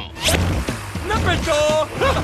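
A quick rising swish sound effect about a quarter second in, then cartoon background music, a melody of held notes coming in near the end.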